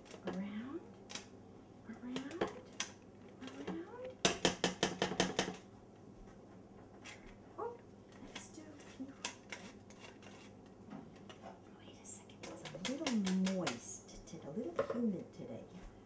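Old tin hand-crank flour sifter being cranked, its metal agitator clicking and rattling against the screen as flour falls through. The longest run comes about four seconds in, at roughly eight clicks a second, with shorter runs later.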